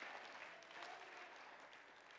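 Faint, scattered applause from a church congregation, dying away.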